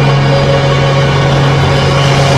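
Instrumental karaoke backing track of a musical-theatre ballad, with no vocal, holding a sustained chord over a steady low bass note.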